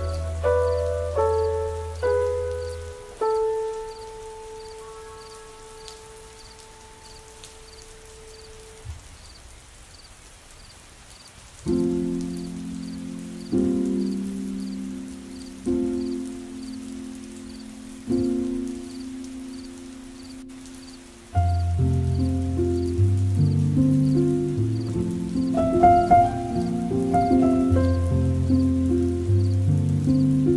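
Slow, soft piano music: a few notes and a long-held note that fades into a quiet stretch, then chords struck about every two seconds, with deeper bass chords joining about two-thirds of the way in. A soft steady hiss runs underneath.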